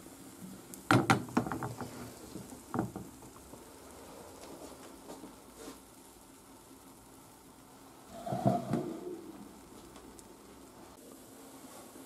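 Crepe batter sizzling faintly in butter in a nonstick frying pan. Short knocks come about a second in and near three seconds, and a louder clatter a little after eight seconds.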